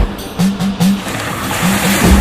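Background music with short low notes in two groups of three, over the rushing splash of a Suzuki Dzire sedan driving fast through a flooded dirt track.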